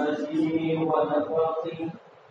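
A man's voice chanting Arabic verse in a melodic recitation style, with long held notes that waver in pitch, heard through the hall's microphone.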